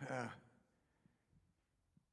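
A man's brief hesitant "uh" at the start, falling in pitch, then a pause of faint room tone.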